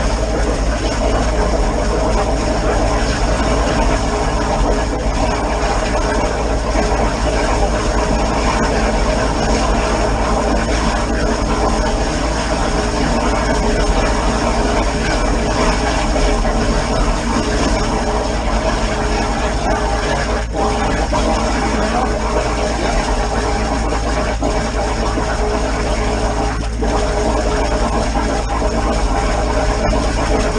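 A drain jetter running steadily: the engine and high-pressure pump work at a constant load while the jetting hose washes out the blocked drain.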